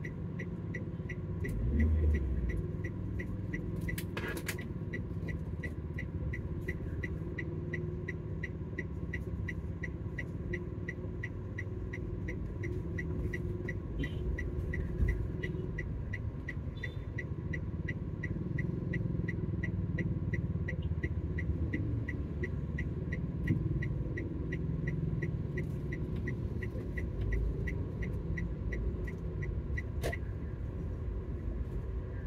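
Car interior in slow stop-and-go traffic: a steady low engine and road rumble, briefly swelling about two seconds in. Over it, a regular light ticking about two to three times a second.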